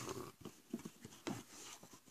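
Faint handling noise: a few soft knocks and rustles, about four short ones spread through two seconds, as cardboard packing from a trading-card box and the tablet are moved by hand.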